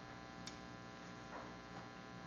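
Faint steady electrical mains hum in a pause of speech, with a faint click about half a second in.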